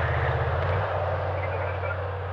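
Steady low drone of the Keiler mine-clearing tank's engine, heard inside the crew compartment, with a faster low pulsing that eases off about a second in.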